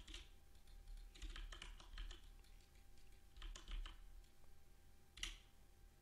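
Faint clicking of computer keyboard keys in a few short clusters, over a low steady background hum.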